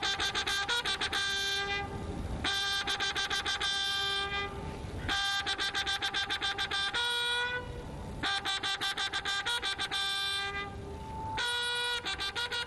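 Fanfare trumpets sounding a repeated ceremonial call. Each phrase is a run of rapid repeated notes ending on a held note, and it comes again about every three seconds.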